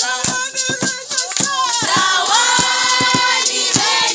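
A group of voices singing together with steady hand-clapping, about three to four claps a second; the voices hold one long note near the middle.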